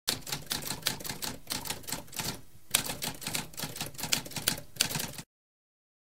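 Typewriter keys being struck in a fast, dense run of clacks, with a brief pause about halfway through, stopping abruptly about five seconds in.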